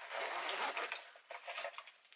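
Zip of a small cosmetics bag being pulled open, a rasping run in the first second, then scattered crinkles and rubs as the bag is handled.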